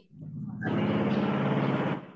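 A motor engine running: it builds up over the first half-second, holds a steady, even note, then drops away right at the end.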